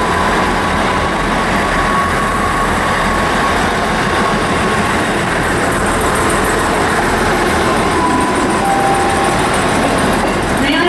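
South West Trains Class 159 diesel multiple unit pulling away, its underfloor diesel engines running under power with a steady rumble. A faint thin squeal comes and goes in the first few seconds and again near the end, as the wheels take the curved pointwork.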